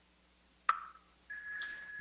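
Buddhist Dharma instruments struck to open a chant. A sharp strike with a brief ring comes just under a second in. Then a bell rings about half a second later and holds one steady high tone.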